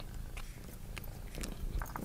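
A domestic cat close to the microphone, faintly purring as it noses into an open phone box, with a few light ticks about halfway through and near the end.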